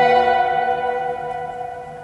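A held chord from an ensemble of smartphone and tablet app instruments, dying away across the two seconds in the cathedral's reverberation.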